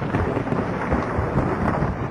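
Heavy rain with rumbling thunder, a steady dense noise.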